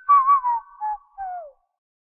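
A short whistled tune that opens a network outro jingle: a brief high note, a wavering note, then a few notes that slide downward, the last falling furthest.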